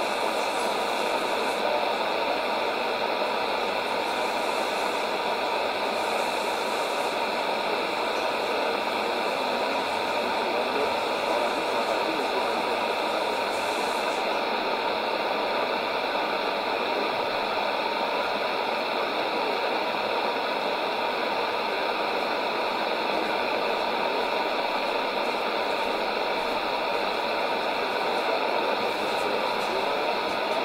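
Steady shortwave hiss and static from a Sony ICF-2001D receiver tuned to 7265 kHz in upper-sideband mode, the weak broadcast lost in the noise.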